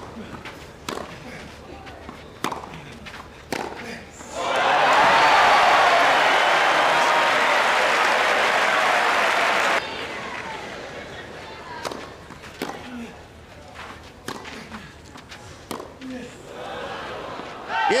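Tennis ball struck back and forth in a rally on a clay court, a few sharp pops, followed by a crowd applauding and cheering loudly for about five seconds that cuts off suddenly. Then a quiet stadium with a low crowd murmur and scattered ball bounces and hits, with the crowd rising again just at the end.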